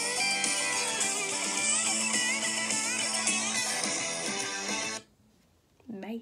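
A country song with guitars playing, then cutting off suddenly about five seconds in, followed by a brief vocal sound at the very end.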